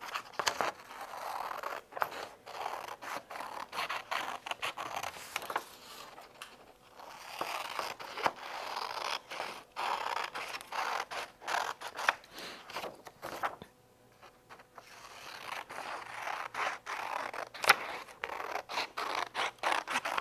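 Scissors cutting through a sheet of paper: a long run of short snips with the paper rustling between them, pausing briefly a little after halfway.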